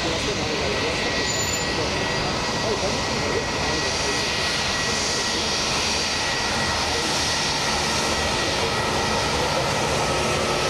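Rolls-Royce Trent XWB engines of a taxiing Airbus A350 running at low thrust: a steady jet whine with a thin high tone held throughout.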